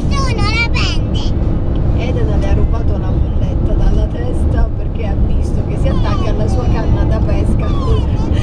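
Steady road and engine noise inside a Volkswagen California camper van's cabin at motorway speed. A child's high voice calls out in the first second and again around six seconds in.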